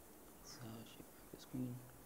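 Faint, low murmured voice: two short indistinct utterances, the second and louder one about one and a half seconds in.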